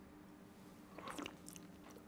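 Faint mouth sounds of a person tasting red wine: a few small wet clicks starting about a second in as the sip is worked around the mouth.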